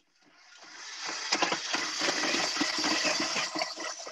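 Stand mixer with a flat beater starting up in a stainless steel bowl of butter: its whirring rises over the first second or so, then runs steadily, with scattered clicks as the beater works the butter.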